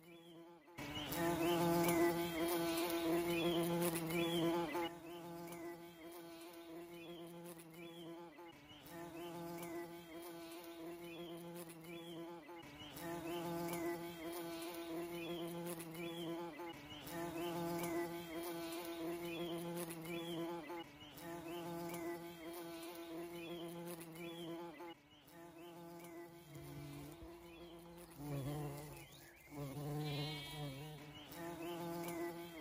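Bumblebee buzzing in flight: a steady low hum that starts about a second in and goes on in stretches of a few seconds, with brief dips between.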